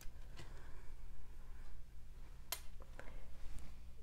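Quiet handling of candle wicks on a stone tile surface, with a few sharp clicks in the second half as the small metal wick tabs tap the tile. A steady low hum runs underneath.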